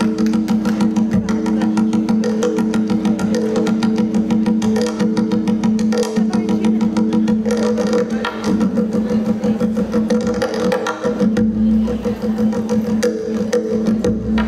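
Tonbak (Persian goblet drum) played solo with the fingers and hands: a fast, unbroken stream of strokes and rolls over the drum's steady ringing tone.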